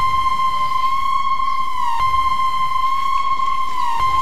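A steady, high electronic tone with a few overtones starts abruptly and holds, dipping slightly in pitch about every two seconds.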